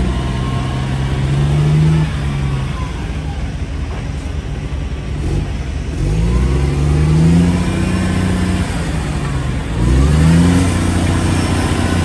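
Caterpillar diesel engine of a 2005 Freightliner M2 daycab truck revved up from idle three times: at the start, about six seconds in, and about ten seconds in. Each time the pitch climbs, holds, then falls back.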